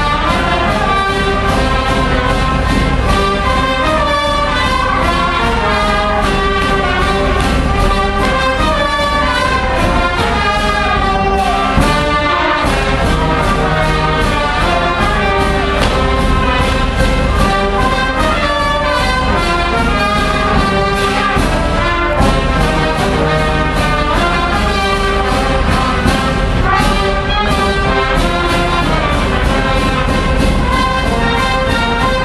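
Hungarian village brass band (rezesbanda) playing folk dance tunes from Hosszúhetény, trumpets and trombones over a steady, even beat.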